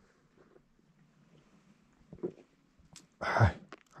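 A man taking a sip of tea from a thermos cup: a faint click about three seconds in, then a short, noisy slurp near the end.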